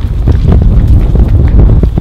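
Loud wind rumble on a handheld camera's microphone as the person holding it runs, with irregular footfalls heard through it.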